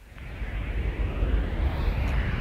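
A deep rumbling noise swells up from near silence within the first half second and then holds loud and steady.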